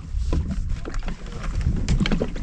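Small knocks and clatter of handling on a jet ski over a low rumble of wind on the microphone.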